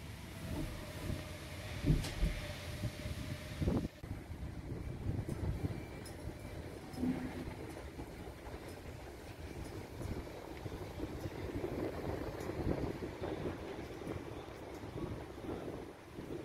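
Street ambience with a low, uneven rumble of road traffic and a sharp knock about four seconds in.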